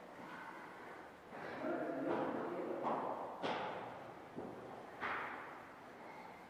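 A young child's voice in the background, calling out in a few short bursts: a pitched cry about a second and a half in, louder outbursts around three seconds, and another near five seconds.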